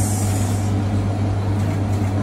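Steady low mechanical hum of a kitchen motor such as a stove's extractor fan, even in level with no change.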